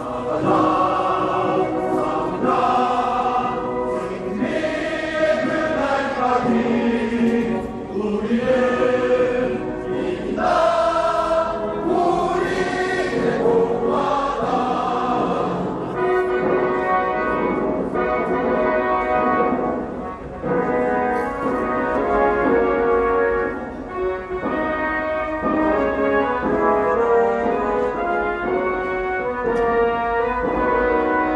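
Many voices singing together in chorus to music, continuously; about halfway through the song moves into longer held notes.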